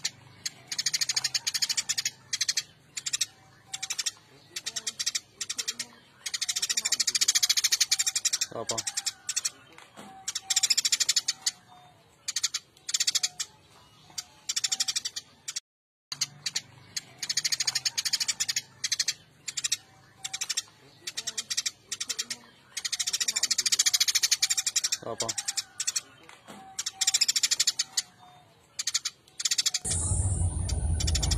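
Recorded sparrow chirping played as a lure from a small MP3 player: a looped track of about fifteen seconds heard twice over, with a short break in the middle.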